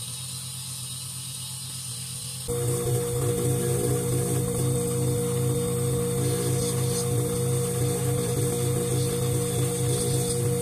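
Steady electric motor hum from dental lab equipment. About two and a half seconds in it jumps suddenly louder and fuller as a bench polishing lathe runs, its buffing wheel used to polish a small plastic (acrylic) jacket crown.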